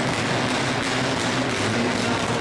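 Mitsubishi Lancer Evolution X rally car's turbocharged four-cylinder engine running hard as the car slides sideways on ice, at a steady level.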